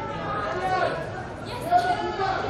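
Several people's voices calling out and chattering over one another, with one louder, higher-pitched shout near the end.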